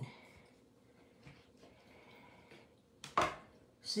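A table knife cutting through a soft burrito on a plate: faint scraping and pressing, then a single sharp clack of the knife a little after three seconds.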